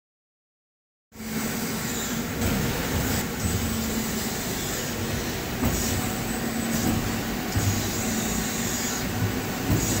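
A Cincinnati Milacron Magna MTs 55 injection molding machine running, a steady hum and hiss with a few light clicks. The sound cuts in abruptly about a second in.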